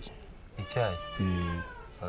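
A drawn-out, slowly falling high-pitched call like a cat's meow, lasting under a second, with a low murmured voice beneath it.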